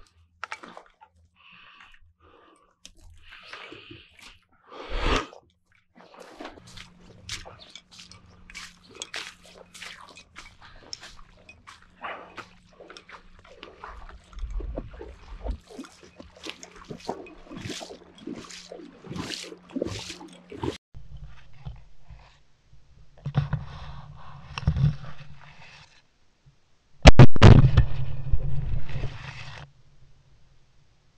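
Footsteps crunching through dry brush and stalks, a quick run of irregular crackles, then sloshing through shallow floodwater, with the loudest burst of noise near the end.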